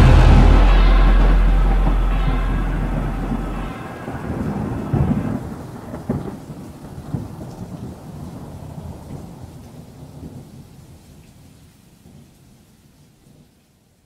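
Rolling thunder with rain: a long rumble that dies away steadily, with a few louder peals about five and six seconds in, fading out to silence near the end.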